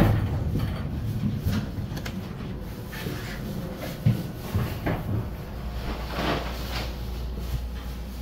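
Dover hydraulic elevator's doors sliding and knocking shut: a series of knocks and clatters. A low steady hum comes in about two-thirds of the way through.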